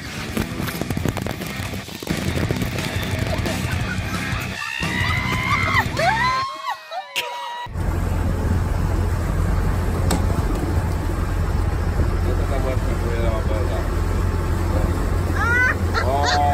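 After a cut about eight seconds in, a motorboat runs at speed: a steady low engine drone under the rush of its wake and the wind. Before the cut, a noisy scene with a few rising-and-falling calls that cannot be identified.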